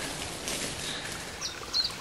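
Forest ambience: a steady rushing hiss with a few faint, short bird chirps near the end.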